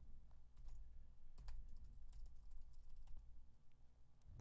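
Typing on a computer keyboard: faint, irregular keystroke clicks.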